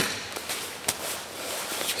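Sharp slaps and knocks of bodies and hands on a grappling mat, two louder ones about a second apart, with rustling gi cloth as two grapplers release a strangle and untangle.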